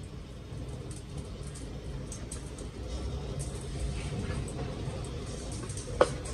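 A steady low rumble of wind buffeting the microphone, with faint light clinks of stainless steel mesh colanders being handled and one sharp knock at the end.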